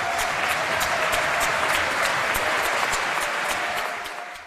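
Audience applauding: dense, steady clapping from many people at the close of a speech.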